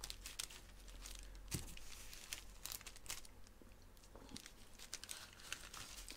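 Faint crinkling of a sheet of white paper under cheese-topped burger patties as they are handled, with a few light clicks and one slightly louder tap about a second and a half in.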